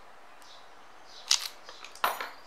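Handling sounds of cotton thread being wound around an aari needle: faint rubbing, then a brief sharp, scratchy crackle about one and a half seconds in and a smaller one near the end.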